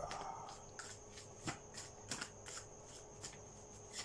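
A deck of playing cards being shuffled by hand: a short rustle followed by soft, irregular clicks of the cards.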